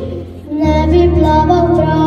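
A girl singing solo into a microphone, accompanied by an electronic keyboard. After a short pause near the start, her voice and a low keyboard chord come back in together about half a second in.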